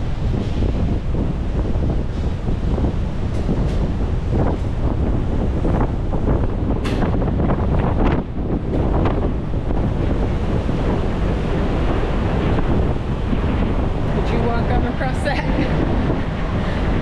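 Strong wind buffeting the microphone on an open ship's deck, with the rush of churning sea water below.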